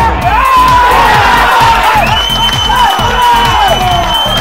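Shouting and cheering voices as a football goal goes in, over electronic background music with a steady beat. A long, steady high tone starts about two seconds in.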